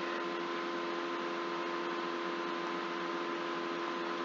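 Steady computer noise picked up by the microphone: a constant hum of several fixed tones over an even hiss, unchanging throughout.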